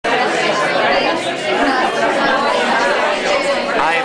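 Background chatter of many people talking at once, with no single clear voice.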